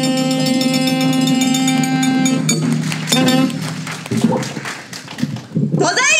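A saxophone holds one long note over the chindon drum, cutting off about two and a half seconds in. A short note follows, then scattered drum and gong taps.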